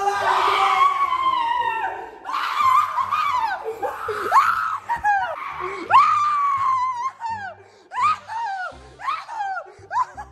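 Several people screaming and shouting over each other, with shrill, high-pitched shrieks that rise and fall sharply, as a group reacts in alarm to a fight.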